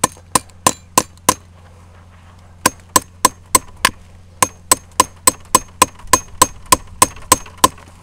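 A hammer tapping a metal sap spout into a tap hole drilled in a birch tree, each blow a sharp metallic knock with a short ring. About three blows a second: five, a pause of over a second, then a steady run of blows until near the end.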